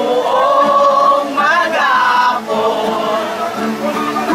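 A song sung by several voices together in long held notes over a steady accompaniment.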